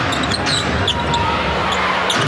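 Live basketball game sound in an arena: steady crowd noise, with a basketball being dribbled and sneakers giving short high squeaks on the hardwood court, mostly in the first second.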